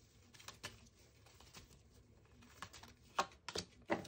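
Tarot cards being handled and one laid down on a wooden table: faint scattered clicks of the cards, then a few sharper taps near the end as the card goes down.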